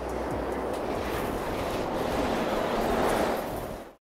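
A steady rushing noise that grows a little louder, then fades out just before the end.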